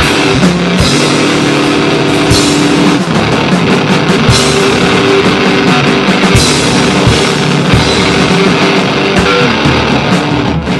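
Live rock band playing loud with electric guitar and drums, an instrumental passage with no singing.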